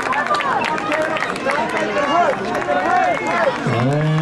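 Crowd of spectators calling out and cheering runners on, many voices overlapping, with scattered claps. A lower man's voice comes in near the end.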